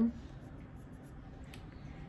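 Faint handling noise from a small Batman statue being turned over in the hand, a light scratchy rubbing with one soft click about halfway through, in a quiet small room.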